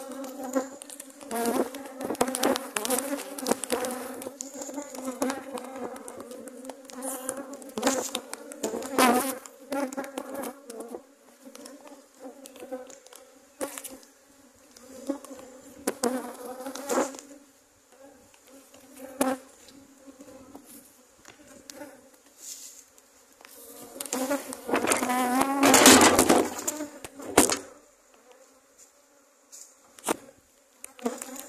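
Swarm of honey bees buzzing in flight around an opened hive, a steady droning hum that swells loudest near the end as bees fly close to the microphone. Occasional sharp knocks sound through it.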